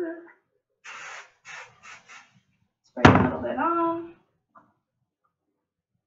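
Aerosol hairspray can sprayed in four short hisses onto a teased section of long hair, about a second in. About three seconds in comes a sudden, louder sound of a voice.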